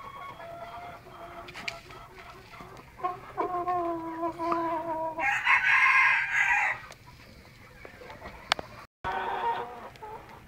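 Chickens in a coop: a rooster crows once, a long held call from about three seconds in that turns harsher before ending near seven seconds. Softer hen calls come before it.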